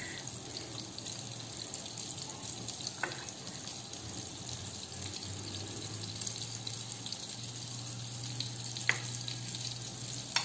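Faint, steady hiss of butter heating in a frying pan on the stove, with a couple of faint clicks.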